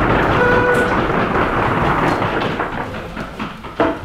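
Audience applauding in a lecture hall, the clapping thinning and dying away over a few seconds, with a single sharp knock near the end.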